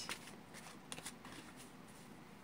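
A deck of tarot cards being shuffled by hand: faint soft card rustling with a few light clicks about a second in.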